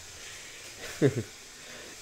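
A man's short laugh about a second in, over a steady faint hiss.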